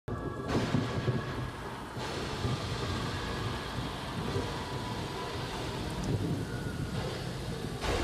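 Rain and thunder soundscape: a steady hiss of rain over a low rumble.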